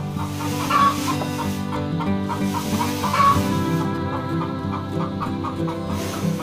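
Background music with two loud farmyard animal calls over it, one about a second in and one about three seconds in.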